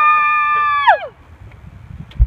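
A person's long, high-pitched held "haw" closing a shouted "Yeehaw!", which drops off sharply in pitch and dies away about a second in.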